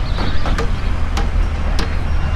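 Steady low rumbling noise with three sharp clicks about half a second apart.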